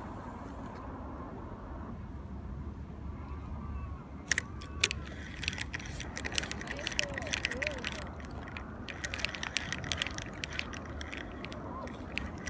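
Spinning reel being worked during a short cast and retrieve: two sharp clicks about four seconds in, then rapid, irregular metallic ticking as the reel is cranked and the rod jerked, over a low steady rumble.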